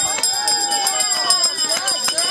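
Spectators' voices and calls at a race finish line as a runner comes in, overlapping and without clear words, with scattered sharp clicks and a thin steady high tone behind them.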